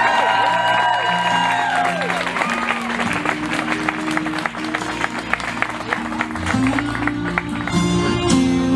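Guests clapping and cheering, with whoops in the first couple of seconds. Music with a guitar plays underneath, its low notes stepping steadily.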